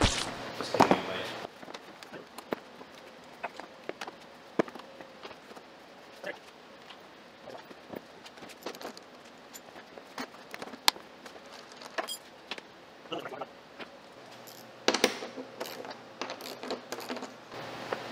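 Scattered clicks, knocks and rattles of a motorcycle seat's plastic base being pushed down and worked onto the frame and fuel tank, which does not fit. There is a denser flurry near the start and another about fifteen seconds in.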